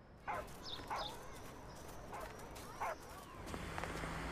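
A small dog yapping about six times in short, high yips, spread over the first three seconds, as a cartoon sound effect.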